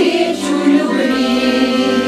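A women's folk choir singing together to accordion accompaniment, settling into a long held note about a second in.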